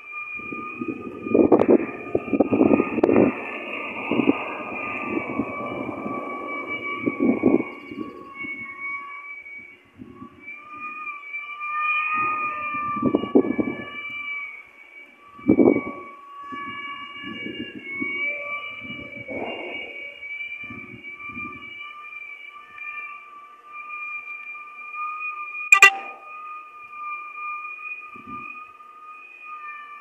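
Strong straight-line wind gusting against the microphone in repeated rushing bursts, heaviest in the first several seconds, over a steady high whistling tone. There is one sharp click near the end.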